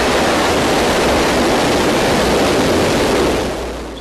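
Loud, steady roar of several missiles launching at once, fading off near the end.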